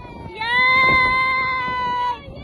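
A woman screaming with delight on a swinging chair ride: one long, high scream held at a steady pitch, starting about half a second in.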